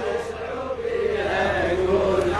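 A group of male mourners chanting a Shia Muharram lament refrain together, a blended mass of voices, over a steady low hum.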